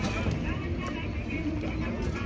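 Background voices of people talking over a steady low rumble of street traffic.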